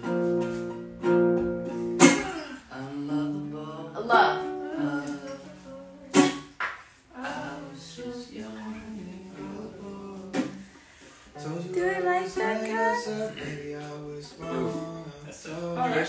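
Acoustic guitar strummed, chords ringing on with a fresh strum about every two seconds, while a voice sings a verse melody over it, most clearly in the second half.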